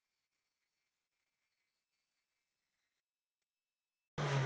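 Near silence: the sound track is essentially empty, with no saw or other sound audible.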